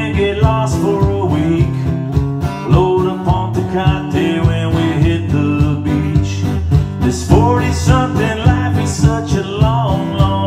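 Live country song on a strummed acoustic guitar, kept in time by a steady kick beat from a foot-operated drum.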